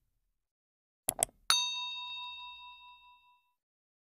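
Sound effect of two quick mouse clicks, then a single bell ding that rings out and fades over about two seconds.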